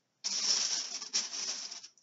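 Rustling and light rattling as items are rummaged through and handled, lasting about a second and a half with a brief break in the middle.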